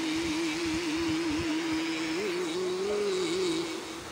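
Harmonica playing a slow melody: one long, held note that wavers in pitch, with a lower second note sounding under it. Rushing river water runs faintly beneath.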